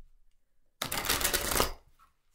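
A deck of tarot cards riffle-shuffled by hand: about a second in, one quick rattling riffle lasting about a second as the two halves interleave.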